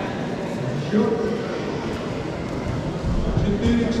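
Indistinct voices in a large sports hall, with a few low thuds about three seconds in.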